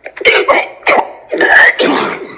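A man coughing in a quick series of about six short, harsh coughs.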